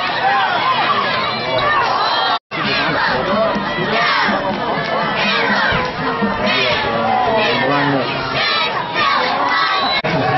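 Crowd of spectators at a football game shouting and cheering, many high-pitched voices overlapping. The sound cuts out for an instant about two and a half seconds in.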